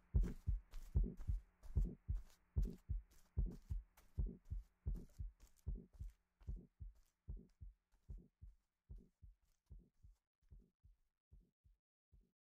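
Rhythmic thudding beat, about two and a half thuds a second, each with a sharp click on top, fading out steadily until it has almost died away by the end.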